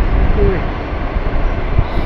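Electric suburban train running at speed, a steady loud rumble of wheels on rails mixed with rushing air, heard from an open window of the moving train.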